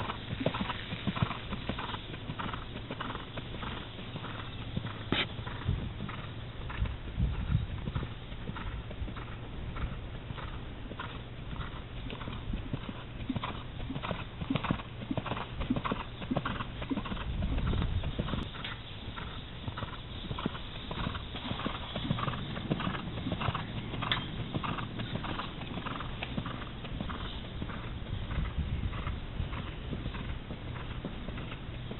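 Hoofbeats of a Thoroughbred gelding being ridden at trot and canter on dirt arena footing: a steady run of strides. A few deeper low thuds come about seven seconds in and again near the middle.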